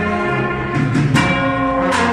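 A cornet-and-drum band playing, with bell lyres ringing out over held bugle notes, and a few sharp strikes that ring on near the middle and end.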